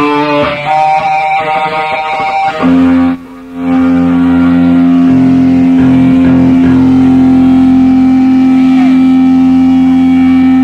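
Live sludge-rock band with distorted electric guitar and bass: a run of notes, a brief drop about three seconds in, then one long chord held and ringing out.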